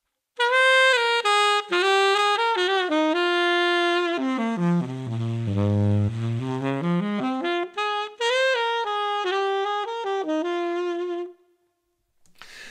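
Tenor saxophone played with a soft, velvety subtone: a slow line that starts in the upper-middle register, steps down to the lowest notes of the horn about five to six seconds in, climbs back up and ends on a held note.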